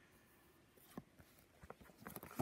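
Near silence, with one faint click about a second in and a few light ticks near the end, from a phone being handled.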